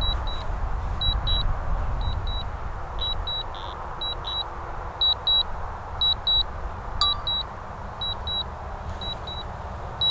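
Short high electronic beeps from a metal detector, mostly in quick pairs at irregular intervals, over a steady low rumble of wind.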